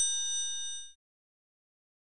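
A bright, bell-like ding sound effect of the kind laid over a subscribe-button click animation. Several ringing tones fade and stop about a second in.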